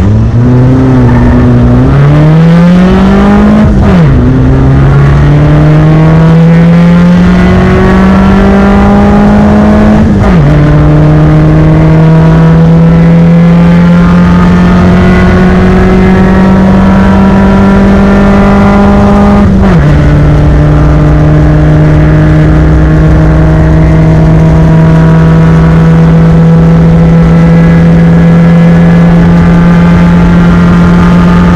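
Touring race car engine heard from inside the cabin, accelerating flat out from a race start. The pitch climbs and drops sharply with three upshifts, about four, ten and twenty seconds in. In the top gear it climbs only slowly.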